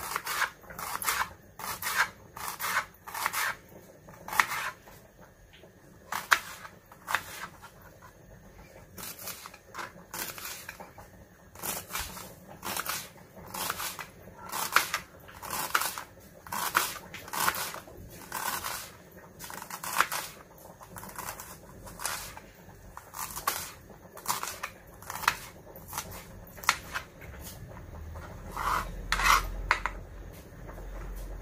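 A kitchen knife dicing onion and bell peppers on a cutting board: short, sharp cuts at an uneven pace of roughly one to two a second.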